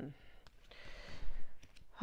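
A soft breathy exhale, like a sigh, then a few faint clicks near the end.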